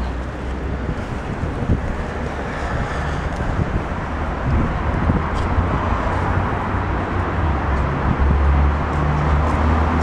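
Street ambience of traffic, with wind buffeting the microphone. A deeper low rumble grows louder from about eight seconds in.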